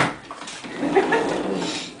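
A dog tearing and ripping at something, an uneven rustling noise that follows a sharp click at the very start.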